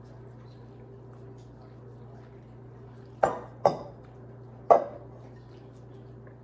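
A spatula knocks sharply three times against glass dishware, two close together and a third about a second later, while the egg and hash brown mixture is scraped from a glass bowl into a casserole dish.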